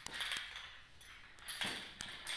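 Quiet movement of a person getting into position: faint rustling and a few light clicks, with a louder rustle near the end.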